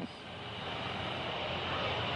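Steady outdoor background din with no clear single source, rising gradually in level.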